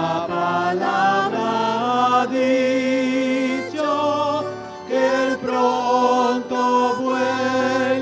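A hymn sung in church, a woman's voice leading on long held notes with a wavering vibrato, over keyboard accompaniment.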